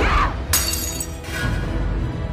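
Crockery shattering: a sharp crash with ringing shards about half a second in, then a second, smaller crash a moment later, over dramatic background music.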